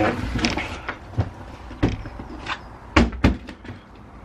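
A household door being opened and handled, with a string of knocks and clunks as a heavy cardboard box is taken out through it. The two loudest clunks come close together about three seconds in.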